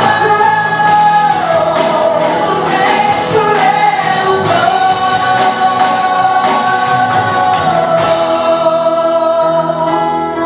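Live worship music: a woman leading the singing into a microphone over acoustic guitar, with more voices singing along, the notes long and held.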